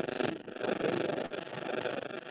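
Loud, rough crackling noise with no speech, from an audio fault on the microphone or sound line while the sound is being checked.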